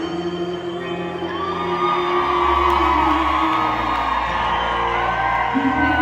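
Live country band music recorded from the crowd, with a woman singing long held notes over sustained bass and guitar, and audience whoops.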